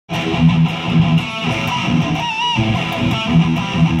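Ibanez J-Custom RG8570Z electric guitar played through an amplifier: a riff of low picked notes, with a held higher note bent and shaken with vibrato about halfway through.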